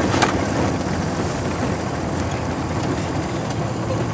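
Light aircraft's engine and airflow noise heard inside the cockpit, steady, as the plane runs along the runway close to the ground, with a brief click just after the start.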